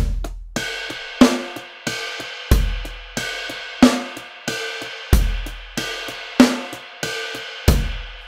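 A slow finger-drummed beat played on a Native Instruments Maschine MK3 pad controller, triggering drum samples. A kick drum lands about every two and a half seconds with a snare midway between, and lighter ride-bell hits ring between them.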